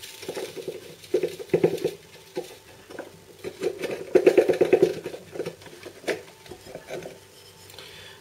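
Plastic food-chopper jar knocked and shaken against the rim of a ceramic bowl to tip out crushed biscuit crumbs. It makes spells of quick tapping and rattling, one about a second in and a longer one around four seconds in.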